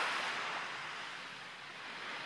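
Sea surf washing on a beach, a steady hiss of waves that slowly gets quieter.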